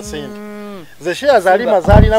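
A man's voice holding one long, steady note for nearly a second, falling away at its end, then breaking into quick vocal phrases. A short low thump comes right at the end.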